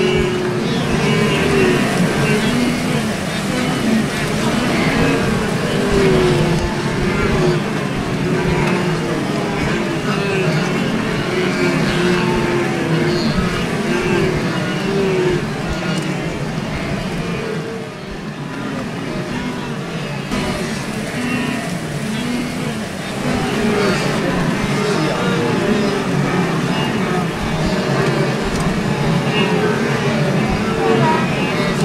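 A large herd of wildebeest calling continuously in many overlapping grunts over the splashing of water as animals leap into and swim across the river.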